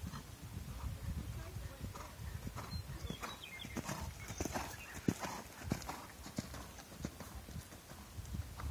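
A horse's hoofbeats in the sand arena at a canter, loudest a few seconds in as the horse passes close by.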